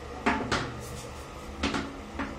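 Plastic toilet seat lid handled on a ceramic toilet bowl, giving sharp clacks: two close together near the start and two more about a second and a half in.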